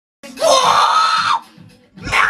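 A loud, high-pitched scream held for about a second, rising in pitch at the start, over music with a beat.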